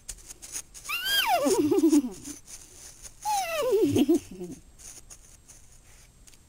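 A child's voice imitating a horse neighing: two long calls that start high and slide down with a wobble, the second one more wavering.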